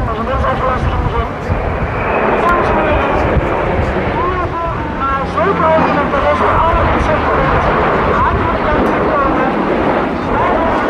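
Engine drone of large military aircraft flying past overhead, a KDC-10 tanker and then a four-engined C-130 Hercules turboprop: mostly low rumble, with a steadier low hum in the middle. Nearby spectators' voices chatter over it.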